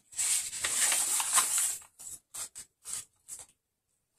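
Paper pages of a handmade junk journal rustling as the book is handled and leafed through: a continuous rustle for about two seconds, then a few short separate rustles.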